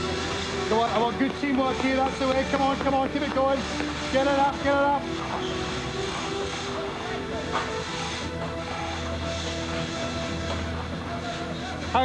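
Background music of steady, sustained synth tones over a low constant hum. Indistinct voices call out over it during the first five seconds or so.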